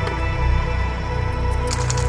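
Background music with sustained tones over a deep bass.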